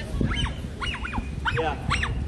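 An animal giving about five short, high-pitched whining calls in quick succession, each rising and then falling in pitch.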